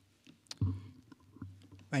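A sharp click and a dull thump about half a second in, then a few fainter clicks: hands handling papers on a wooden lectern, picked up by the lectern microphone. A man's voice starts at the very end.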